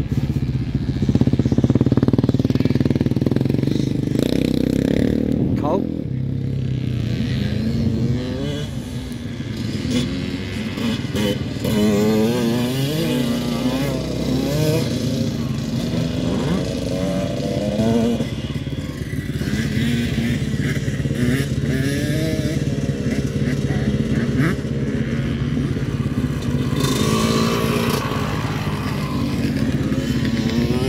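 Several motocross dirt bikes riding around the track, engines revving up and dropping back again and again as the riders accelerate and shift gears, with a steadier engine note for the first few seconds.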